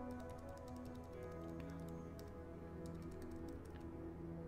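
Faint background music with soft held notes, under scattered light clicks of computer keyboard keys being tapped.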